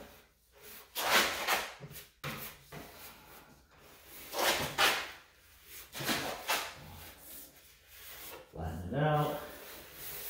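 Notched trowel scraping across the back of a plastic tub surround panel, spreading beads of adhesive in several strokes, each under a second long.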